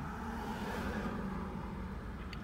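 Steady vehicle noise heard from inside a car cabin: a low engine hum under a rush of road noise that swells and fades around the middle.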